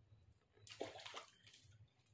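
Faint water splashing and sloshing in a small inflatable paddling pool as a child climbs in and sits down, lasting about a second from just over half a second in.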